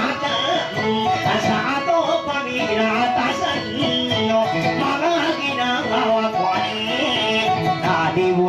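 Guitar playing a plucked accompaniment with a voice singing over it, in the manner of a Maranao dayunday song.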